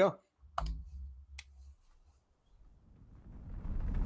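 Two sharp computer clicks about a second apart, with some low bumps, as the video is started. A low rumble then fades in and grows louder near the end: the opening of the film trailer's soundtrack.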